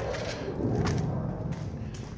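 Footsteps on a concrete floor and camera handling as someone walks through a doorway, with a couple of faint taps under a low rumble.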